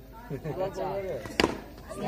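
A single sharp crack of a cricket bat striking the ball, about one and a half seconds in, over faint background voices.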